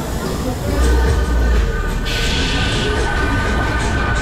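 Funfair ride running, heard from on board: a mechanical rumble that swells about a second in, under steady whining tones, with a burst of hiss around the middle.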